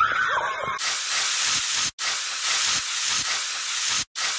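A loud, even hiss like TV static sets in sharply just under a second in, after a moment of wavering tones. It cuts out abruptly for an instant about two seconds in, then carries on steadily.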